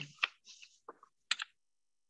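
A few separate clicks and light taps, like keys being pressed at a desk, heard through a video-call microphone, just after a short hum of voice at the very start.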